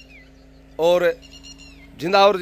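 A man's voice gives one short drawn-out vocal sound about a second in. Faint high falling chirps of small birds come before and after it.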